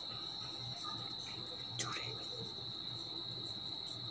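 Faint, steady high-pitched insect trill in the background, with a single faint click about two seconds in and the light scratch of a marker writing on paper.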